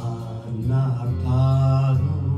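Enka singing: a voice holding long, bending notes in a Japanese ballad melody over a karaoke backing track.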